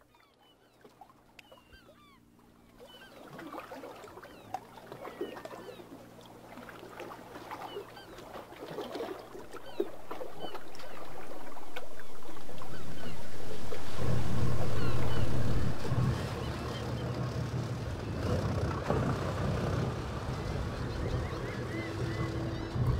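Boat engines running with a low steady drone that grows louder from about halfway, peaks, then eases back, while birds chirp throughout.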